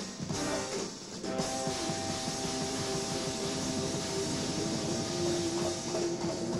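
Live jazz-fusion band playing: busy drums and percussion under sustained keyboard notes that come in about a second and a half in and hold steady.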